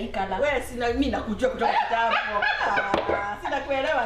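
Women talking in conversation, one voice following another without a break.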